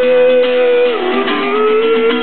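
Acoustic guitar strummed under a long held sung note. The note dips in pitch about halfway through and climbs back up.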